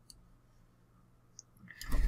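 Quiet room tone with a single faint click of a computer input a little past halfway, then sound rising just before the end as keyboard use resumes.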